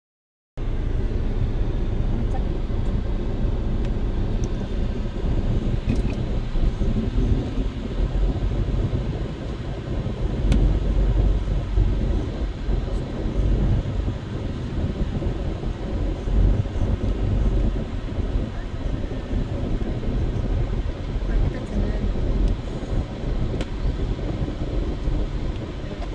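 Inside a moving car's cabin: a steady low rumble of engine and road noise, with a few faint clicks.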